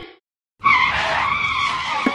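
A tyre-skid screech, most likely an added sound effect. It starts abruptly about half a second in and runs as one steady noisy screech for about a second and a half.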